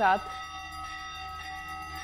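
Temple bells ringing, several metallic tones blending into a steady ringing.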